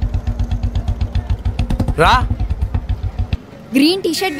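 Motorcycle engine idling with a steady, rapid low beat, which stops abruptly about three and a half seconds in.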